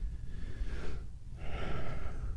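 A man breathing audibly into a close pulpit microphone: two soft breaths, one in the first second and one in the second half.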